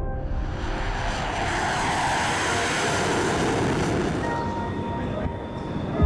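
Tanks driving: a rumbling, rushing noise of engines and tracks that swells through the middle and then fades. Background music with sustained tones plays underneath.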